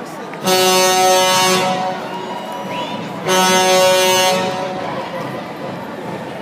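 An air horn sounding two steady blasts, the first about a second and a half long starting half a second in, the second about a second long starting around three seconds in, over the chatter of a street crowd.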